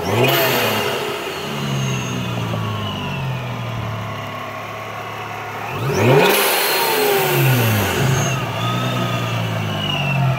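Ripp-supercharged 3.6-litre Pentastar V6 of a Dodge Challenger being free-revved: several blips that rise and fall back toward idle, the sharpest about six seconds in, with a high supercharger whine gliding up and down with the revs.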